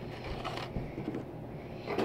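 Fairly quiet room with a low steady hum and a few faint soft knocks, as small containers and a spoon are handled on a tabletop.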